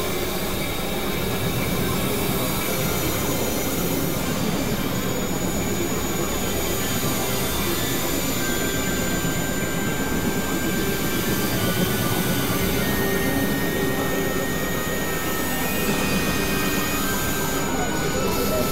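Experimental synthesizer noise drone: a dense, steady rumbling wash with thin sustained high tones layered over it. One tone comes in about eight seconds in, another about thirteen seconds in, and a higher one briefly near the end.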